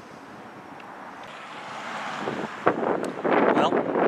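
Wind buffeting the microphone over passing road traffic. The rush starts low and builds slowly, then jumps suddenly to a loud, gusty roar about two-thirds of the way in.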